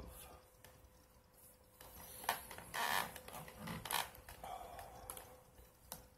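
Handling noises: a sharp click a little over two seconds in, then a few seconds of irregular rustling, over a faint steady hum.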